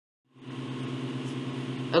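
Dead silence for about a third of a second, then a steady low hum with faint hiss from the recording's background, running under the lecture mic until a word starts at the very end.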